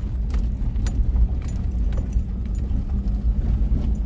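A car driving slowly over a rough dirt road, heard from inside the cabin: a steady low engine and road rumble with scattered small clicks and rattles from the bumpy surface.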